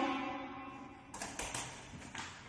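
A few quick, light clicks or taps about a second in, after the end of a girl's drawn-out word fades away.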